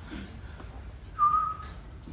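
A person whistling one short, steady note a little past the middle, against a faint low room hum.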